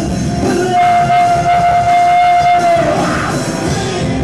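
Live rock band playing loudly: guitars, bass and drums, with one high note held steady for about two seconds from about a second in.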